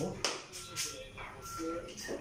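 Metal sockets from a socket set being handled while the largest one is picked out: a sharp click just after the start, then light tapping and shuffling.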